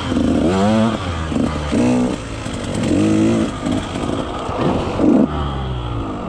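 KTM 150 XC-W single-cylinder two-stroke dirt bike engine revving in repeated short throttle bursts, its pitch rising and falling every half second or so while picking over rocky trail; it is quieter and steadier near the end.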